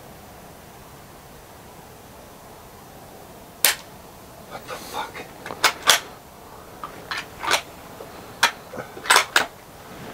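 Savage bolt-action .222 rifle that fails to fire: a single sharp click about a third of the way in, then a run of short metallic clicks and clacks as the bolt is worked. The trouble is put down to the magazine not being seated all the way.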